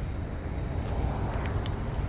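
Steady outdoor background noise with a low rumble, without distinct events.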